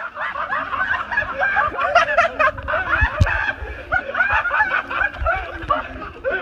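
People laughing and snickering in quick, high-pitched bursts, with a brief low thump about three seconds in.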